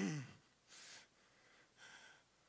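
A man breathing into a handheld microphone in a pause between phrases. There is a brief vocal sound falling in pitch at the very start, then two faint breaths about a second apart.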